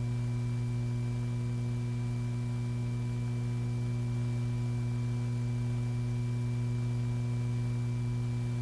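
Steady low electrical hum, unchanging, with a few fainter higher tones above it and no other sound.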